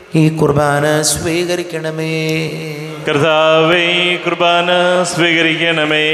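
A man's voice chanting a liturgical prayer into a microphone, in long held sung phrases with a short break about halfway.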